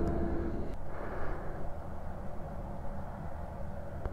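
Steady low rumble of wind buffeting the microphone in open country, with no distinct events.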